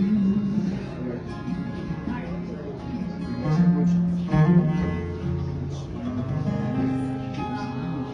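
Acoustic guitar playing the song's closing chords: single strums spaced a second or so apart, each left to ring.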